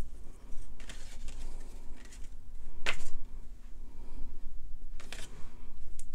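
Small clear plastic jar of embossing powder and its lid being handled on a craft table: faint rubbing with a few sharp plastic clicks, the loudest about three seconds in and another near five seconds.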